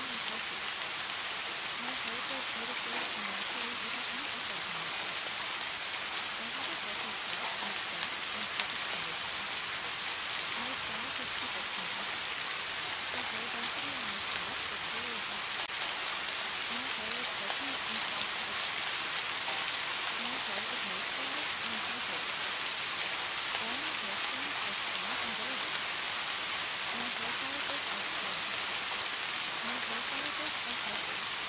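Steady rain, an even hiss with no breaks, with a faint voice murmuring quietly beneath it.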